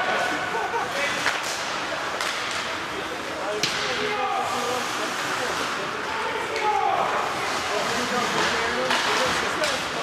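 Ice hockey play in an indoor arena: sharp knocks of sticks and puck against sticks and boards, several times, the loudest about three and a half seconds in, over a steady hall din of skates on ice and players' shouts.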